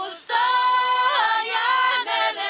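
Women's choir singing a cappella: a brief breathy hiss just after the start, then a held chord in several voices that slide in pitch a little past the middle.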